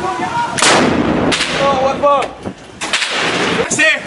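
Shoulder-fired rocket launcher (RPG) fire: a heavy blast about half a second in with a long tail, and a second heavy blast near three seconds. Men shout between the blasts.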